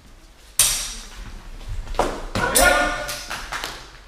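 Steel sword blades clash with a sudden ringing clang about half a second in, followed a second or so later by a man's loud shout, both echoing in a large hall.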